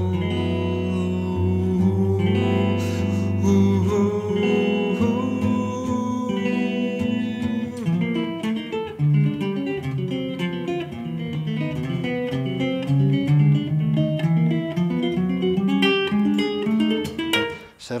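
Ibanez archtop electric guitar played solo. Full chords ring and are held for the first few seconds, then the chords and single notes change quickly through the rest of the passage.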